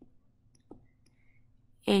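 Two faint clicks about 0.7 s apart over a low steady hum, made while a word is being handwritten in digital ink on the screen; a voice starts speaking right at the end.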